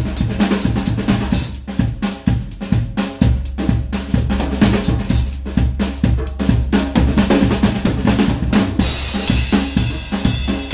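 Acoustic drum kit played with sticks in a busy jam: bass drum, snare and rim hits in a dense rhythm, with a djembe played by hand alongside. Cymbals ring out more brightly near the end.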